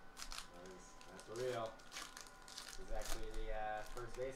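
A baseball card pack's wrapper being torn open by hand, with crinkling and tearing in short spurts, under a person's voice that is louder.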